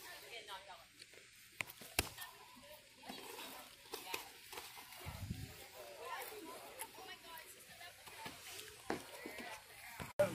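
A few sharp slaps of boxing gloves landing, the loudest about two seconds in, over faint background talking.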